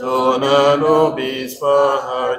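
A single voice singing a slow liturgical chant in long held notes with a slight waver, breaking off briefly in the middle.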